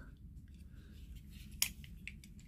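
Quiet handling of a small die-cast toy pickup truck, with one sharp click about one and a half seconds in and a few fainter ticks over a low steady hum.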